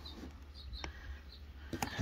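Low, steady background hum with a couple of faint clicks, one a little less than a second in and another near the end.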